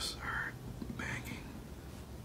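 A person whispering faintly in two short breathy bursts, one at the start and one about a second in, over a low background hum.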